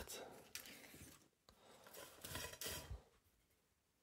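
Faint rustling of small paper slips being handled and drawn from a stainless steel bowl of folded lots, in two short bouts, the second about two seconds in.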